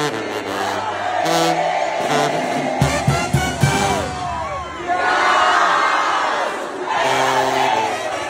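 Live Mexican banda music: brass with a sousaphone bass line and drums, and a crowd shouting and cheering over it. The crowd is loudest past the middle, and there are a few heavy drum hits about three seconds in.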